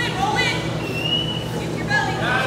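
Voices of spectators calling out, with a brief high, steady tone about a second in.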